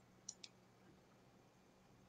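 Two faint, sharp clicks a split second apart from a pair of metal-framed eyeglasses being unfolded and put on, over a faint steady room hum.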